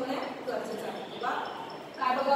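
A woman speaking in short phrases.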